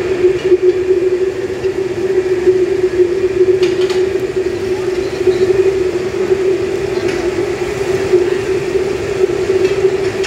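Chicken pakoras frying in a large wok of hot oil, sizzling as pieces are dropped in by hand, under a loud steady hum from the kitchen.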